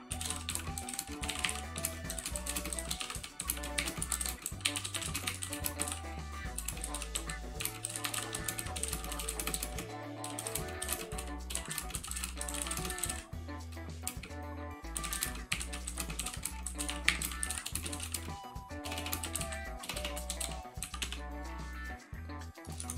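Typing on a computer keyboard, a run of quick key clicks, over background music with a steady bass line.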